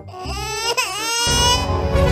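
Baby-crying sound effect, one pitched wail that rises and falls. About a second and a quarter in, a loud rock instrumental with a heavy beat cuts in.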